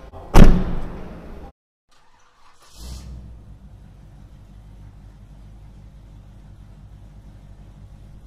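A car door slams shut about half a second in, the loudest sound, on a 2023 Land Rover Defender. After a brief silence, a steady low rumble follows.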